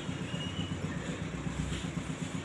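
Low, steady background rumble with no speech.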